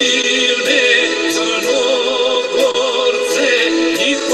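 A male voice singing a folk song with a wavering vibrato over accordion accompaniment.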